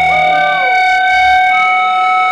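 Electric guitar amplifier feedback: several steady high whining tones held together, with one tone gliding down early on. The bass and drums are silent underneath.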